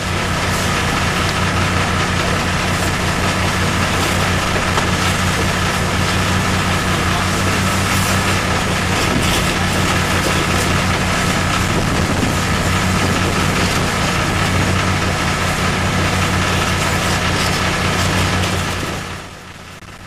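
Engine-driven high-pressure fire pump running steadily under load, with a steady hiss of water spray over it. It fades out about nineteen seconds in.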